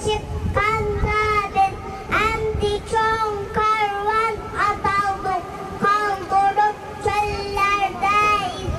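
A young girl singing solo into a handheld microphone, a child's voice carrying a melody in long held notes with short breaks between phrases.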